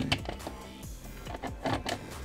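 Light plastic clicks and rattles from a Bosch screwdriver bit case as it is handled and a bit is pulled from its holder, several sharp ticks spread through the moment, over background music.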